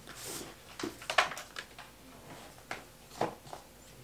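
Books being pulled from a tightly packed shelf: a string of short knocks, scrapes and rustles of books against each other and the wooden shelf, the sharpest knock about a second in.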